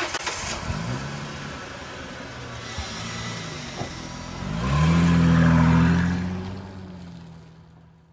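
Car engine revving: the revs climb and drop a few times, then a louder burst of acceleration about five seconds in dies away.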